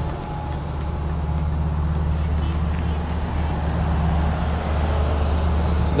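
A heavy diesel engine idling steadily with a low, even hum, most likely one of the crawler excavators running in the yard.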